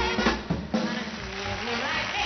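A live band with a drum kit closing a song: the singer's held note stops just at the start, then a few hard drum hits on snare and bass drum in the first second, and the band goes on playing more quietly.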